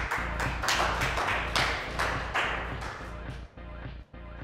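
Electronic beat music triggered live from a Monome grid controller: a pulsing bass line under loud, noisy crash-like sample hits. The hits thin out and the music grows quieter toward the end.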